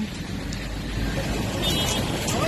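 Roadside traffic noise: a steady low rumble of passing vehicles.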